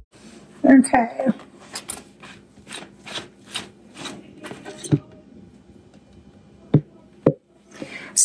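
Handling a plastic personal blender cup full of egg batter: a run of light knocks about two a second, then two sharp knocks near the end as the blade base is twisted off the cup. A brief voice sounds about a second in.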